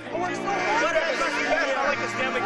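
Several voices of a group of young men talking over one another in excited celebration, with no single voice clear enough to make out.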